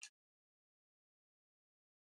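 Near silence: the sound drops out completely just after the start.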